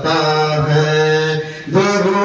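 A man chanting a naat, devotional Urdu verse, unaccompanied into a microphone, drawing out long held notes. One phrase fades about a second and a half in, and the next starts on a higher note.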